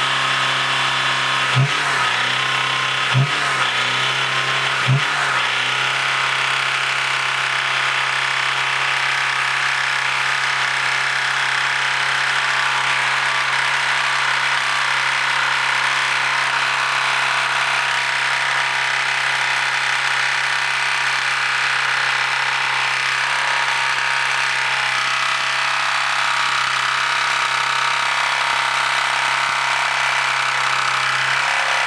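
Dodge Caliber four-cylinder engine running loudly at a steady speed. Three sharp knocks come about a second and a half apart in the first five seconds.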